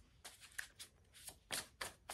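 Faint hand shuffling of a deck of Sacred Creators Oracle cards: a run of soft, quick card flicks and slaps, coming closer together in the second half.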